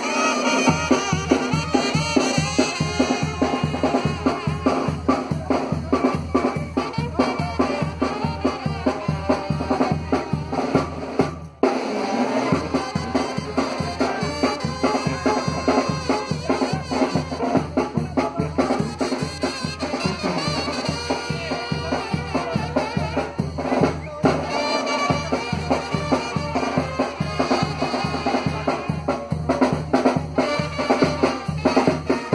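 Live band music for dancing: a bass drum and snare keep a steady, even beat under pitched melody instruments. The music drops out briefly twice, about a third of the way in and again near the end.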